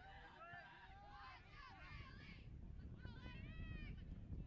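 Faint shouting and calling from several people on a soccer pitch, their raised voices overlapping through the first half and again near the end, over a low rumble.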